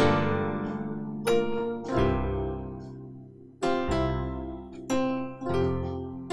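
Keyboard played with both hands in a piano sound, worship-style chords in F major: a string of full chords, each struck and left to ring and fade. It opens on a G minor ninth chord and later resolves to an F chord.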